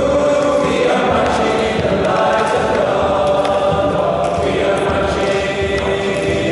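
School choir singing together, holding long notes that change every second or so, in the echo of a large stone church.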